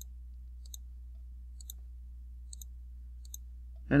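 Computer mouse button clicking: about four or five short, sharp clicks, some in quick pairs, roughly a second apart, over a faint low steady hum.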